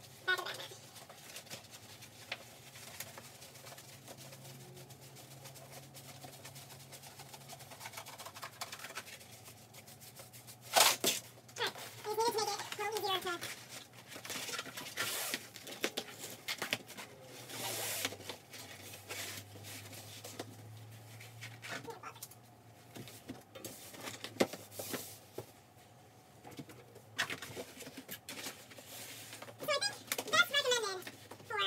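Intermittent rustling and handling noises as sheets are laid out on a bed frame, with a sharp knock about eleven seconds in and a brief murmur of voice just after it.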